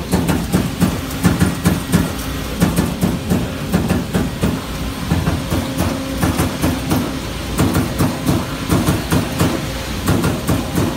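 Amada turret punch press running in the shop: a steady low hum with repeated sharp punching knocks, about two to three a second.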